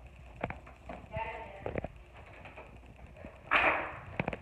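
A front door being worked: a few sharp clicks and knocks from the handle and lock, then a short rush of noise about three and a half seconds in. A faint voice is also heard.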